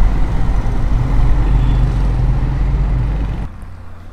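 Low, steady rumble of a car engine running close by, with a low hum under it; it cuts off sharply near the end.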